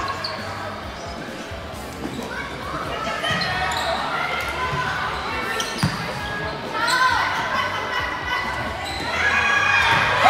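Volleyball being hit during a rally in a large echoing indoor hall, with scattered shouts and calls from players and spectators. A sharp thud of a ball contact comes just before the middle of the rally, and the voices grow louder near the end.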